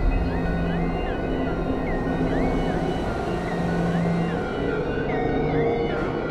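A car driving on an open road, its engine and tyre noise a steady rumble, under music with gliding, stepped synth notes.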